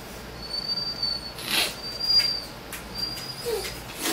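A dog whining in three thin, high-pitched whines, each under a second long. It is a hungry dog waiting to be fed. A short rustling burst comes about one and a half seconds in.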